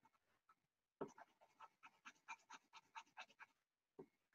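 Faint scratching of a colored pencil shading back and forth on paper: quick, even strokes at about six a second, starting about a second in and stopping shortly before the end.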